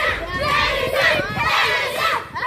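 A group of children shouting and cheering at once, many voices overlapping without a break, as taekwondo sparring goes on in front of them.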